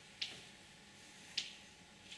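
Two short, sharp clicks about a second apart over faint room hum.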